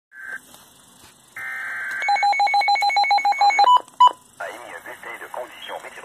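Midland NOAA weather radio sounding a severe thunderstorm alert: a short beep, about a second of buzzy digital alert-header tone, then rapid electronic alarm beeping at about seven beeps a second for a second and a half, and two short tones. About halfway through, a synthesized voice starts reading the warning through the radio's speaker.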